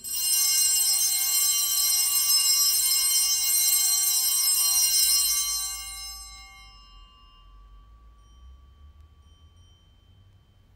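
Altar bells (sanctus bells) rung at the elevation of the chalice during the consecration: a bright cluster of high ringing tones sets in suddenly and holds for about five seconds, then dies away over a second or so, one fainter tone lingering to the end.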